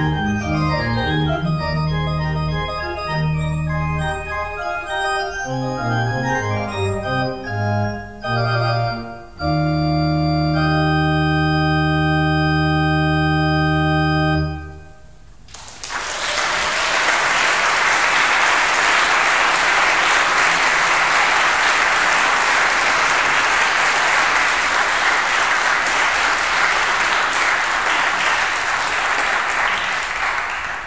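Organ ending a piece: moving chords over pedal bass notes, then a final full chord with deep pedal held for about five seconds and released about halfway through. About a second later an audience applauds steadily, tapering off near the end.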